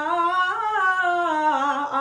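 A woman's singing voice in a vocal range exercise, held on one breath, sliding up and then stepping back down through a short run of notes. It breaks off briefly near the end, then starts rising again.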